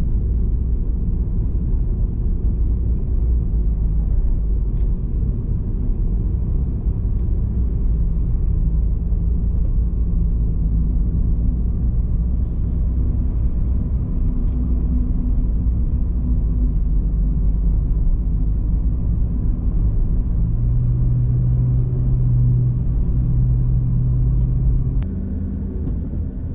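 Car driving along a city road: a steady, loud low rumble of road and engine noise from a moving car. A low droning note comes up near the end, and the sound changes abruptly about a second before the end.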